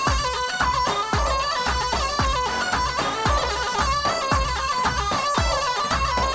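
Kurdish wedding dance music: a large double-headed bass drum (davul) beats a steady rhythm, a strong stroke about once a second with lighter strokes between, under a sustained, ornamented melody line.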